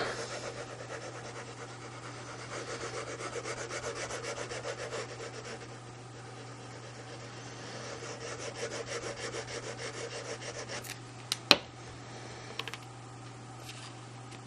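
The foam tip of a liquid glue bottle rubbed in quick back-and-forth strokes over a strip of patterned paper, spreading glue on it, followed by a single sharp tap about eleven and a half seconds in.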